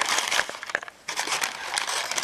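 Brown paper bag crinkling as it is opened and handled, with a short pause near the middle.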